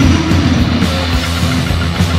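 Studio recording of a Japanese hardcore punk band playing loud, with distorted electric guitar, electric bass and drums.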